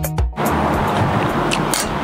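Background music with a steady beat cuts off about half a second in. It gives way to a steady outdoor background hiss like distant traffic, with a few light clicks of a fork on the metal serving pan.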